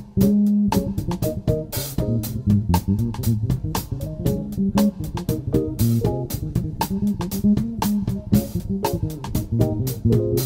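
Live jazz quartet playing, with an electric bass carrying a busy, fast-changing line of low notes over steady cymbal strokes from a drum kit.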